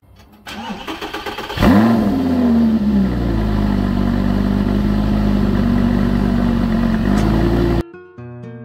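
Lamborghini Gallardo's V10 engine starting from cold. The starter cranks for about a second, then the engine catches with a loud rev flare that rises and settles into a steady fast idle. The sound cuts off suddenly near the end.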